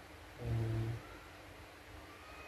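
A person's voice: one short syllable or hum held at a steady pitch for about half a second, a little under halfway in.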